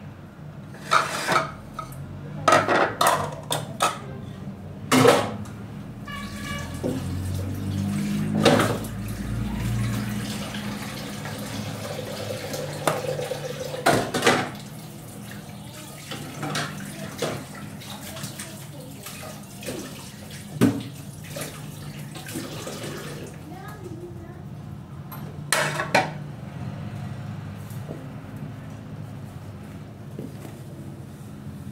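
Dishes and cutlery clattering at a kitchen sink, the knocks thickest in the first few seconds and coming now and then after that, with water running from a tap. A steady low hum lies underneath.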